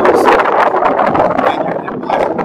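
Strong wind buffeting the microphone: a loud, gusty rumble that eases a little near the end.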